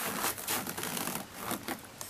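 Irregular rustling and clicking, a quick uneven run of small scuffs and crackles.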